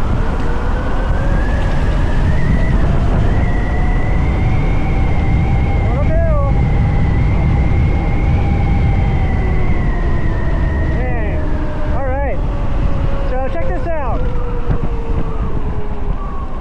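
Electric motorbike's 8 kW motor whining, its pitch rising as the bike gathers speed, holding steady, then falling after about ten seconds as it slows. Heavy wind rush on the microphone underneath.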